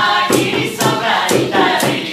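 A woman and a man singing together, with sharp hand-percussion strokes keeping a beat of about two a second.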